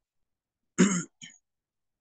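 A man clearing his throat over a call microphone: one loud short burst a little under a second in, then a brief fainter one.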